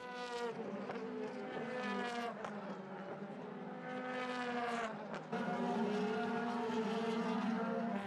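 Race-car V8 engines of DTM touring cars at racing speed, led by a BMW M4 DTM. The revs rise and fall with gear changes, with a short dip about five seconds in.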